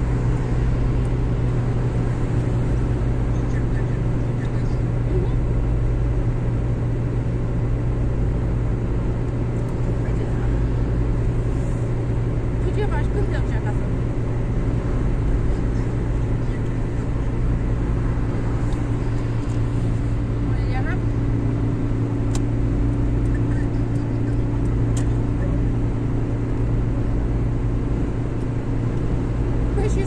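Steady in-cabin road and engine drone of a car cruising at motorway speed, a constant low hum over tyre rumble.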